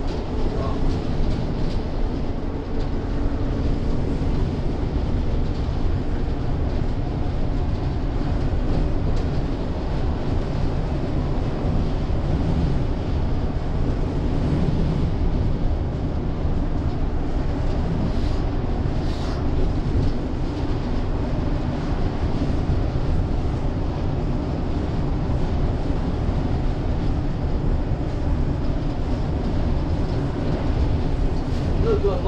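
Inside a bus cruising at steady speed: a constant low rumble of road, tyre and drivetrain noise.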